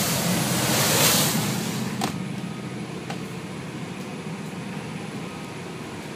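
Motor yacht underway at speed: rushing wind and wake for the first two seconds, then a sharp click, after which the sound drops to the steady low hum of the yacht's engines heard from inside the enclosed bridge.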